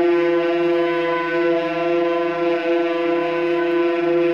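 Two tenor saxophones holding one long, steady note together, unchanging in pitch.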